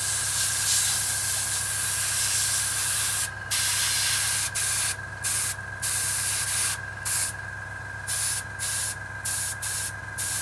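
Airbrush spraying paint onto a small model part. There is a continuous hiss for about three seconds, then short bursts of hiss as the trigger is pressed and released.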